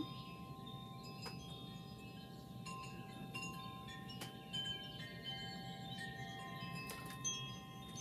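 Wind chimes ringing: many overlapping bell-like tones, each starting at a different moment and ringing on, with a few light clicks among them.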